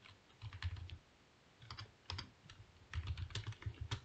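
Computer keyboard typing: faint key clicks in three short bursts as a short phrase is typed.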